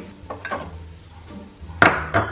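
Quiet handling on a kitchen counter with a few faint clicks, then near the end one sharp knock as a small drinking glass is set down on the countertop.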